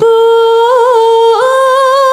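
A Javanese sinden (female vocalist) singing unaccompanied: a long held note with a wavering ornament near the middle, then a step up to a higher held note.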